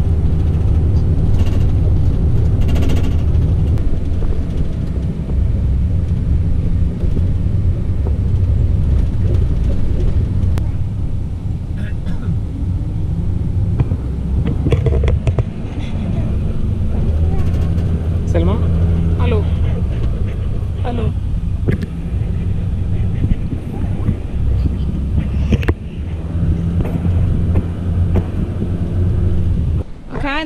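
Engine and road noise inside a passenger van driving along a road: a steady low rumble with the engine note rising and falling as it changes speed. Faint voices come through in the middle.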